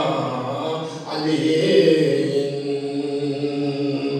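A man chanting a manqabat, a devotional poem in Gilgiti, solo with no instruments. He breaks briefly about a second in, then holds long, steady notes.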